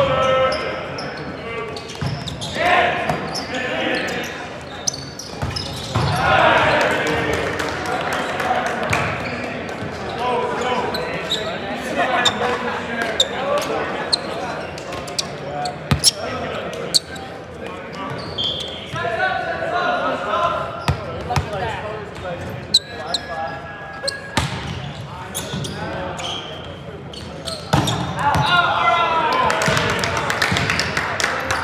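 Indistinct voices of players calling out in a large, echoing gym, with sharp knocks of a volleyball being hit and bouncing on the hardwood floor. The voices get louder near the end.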